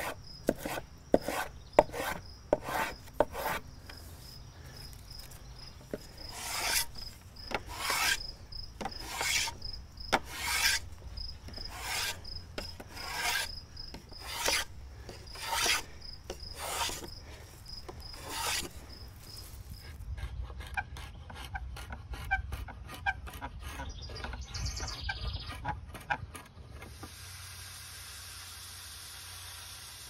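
Hand plane shaving a spruce oar shaft, knocking the corners off the eight-sided shaft to round it: short quick strokes at first, then longer strokes about once a second. After about twenty seconds the strokes turn fainter and finer, ending in a steady hiss.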